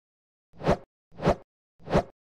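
Intro sound-effect hits for an animated title card: three short swells, about two thirds of a second apart, each building quickly and then cutting off, with silence between them.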